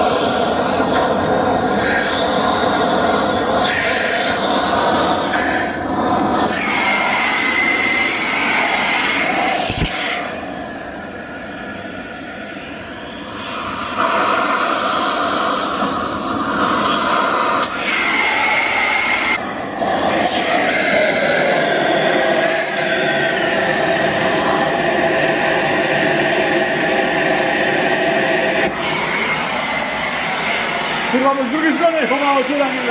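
Gas cutting torch burning through the steel shell of a scooter muffler: a loud, steady hissing roar with a whistling tone, easing off for a few seconds near the middle before coming back.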